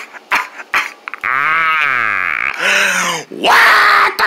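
A person's voice making wordless cartoon-character noises: short quick bursts in the first second, then a long drawn-out cry that rises and then falls in pitch, followed by two shorter cries, the last one the loudest.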